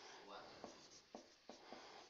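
Faint marker-on-whiteboard writing: a few short, sharp strokes and taps of the marker tip, about half a second apart, as formula characters are written.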